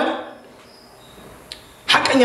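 A man's voice through a handheld microphone trails off, then a pause of about a second and a half of faint room hiss with a single soft click, and he starts speaking again near the end.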